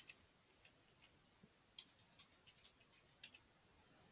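Faint, irregular clicks of computer keyboard keys as a password is typed, about ten keystrokes over a few seconds.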